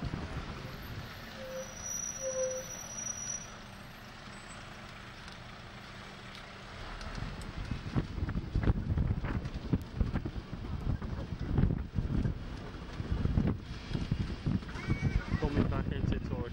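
Wind buffeting the microphone on the open top deck of a moving bus, over the bus's running noise. The buffeting becomes much louder and gustier about seven seconds in.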